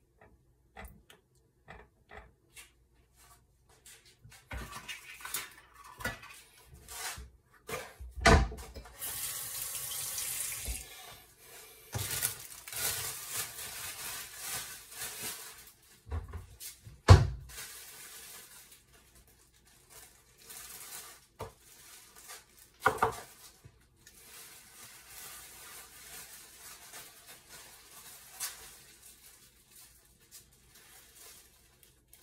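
Kitchen tap running in several separate spells, with clatter and a few sharp knocks of dishes or pans being handled between them; the loudest knock comes a little past the middle.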